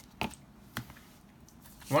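Plastic-sleeved trading cards handled by hand, with two short clicks as they are set down and picked up.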